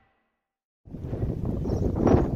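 Dead silence, then a little under a second in, outdoor background noise starts with wind rumbling on the microphone.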